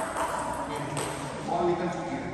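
A table tennis ball clicks once on a bat or table about a second in, over indistinct voices.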